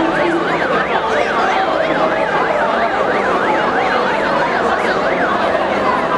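An emergency vehicle siren wailing in fast up-and-down sweeps, about three a second, over crowd noise; it fades out shortly before the end.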